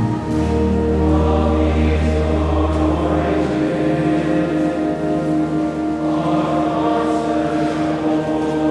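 Choir singing a slow hymn with organ accompaniment in a reverberant church. A low held bass note drops away about three and a half seconds in.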